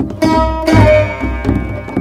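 Instrumental music on plucked strings, with sitar and bouzouki, over a steady beat of deep hand-drum strokes.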